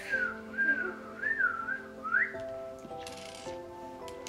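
A boy whistling a short tune, the pitch bending up and down in a few quick phrases for about two seconds, then stopping.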